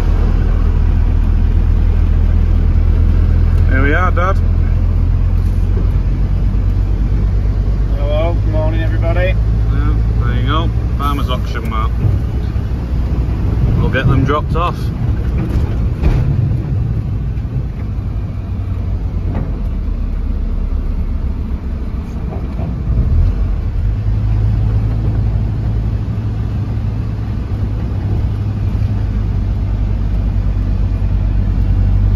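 Road vehicle's engine and tyre noise heard from inside the cab while driving, a steady low drone that eases off for several seconds past the middle and picks up again about three-quarters of the way through.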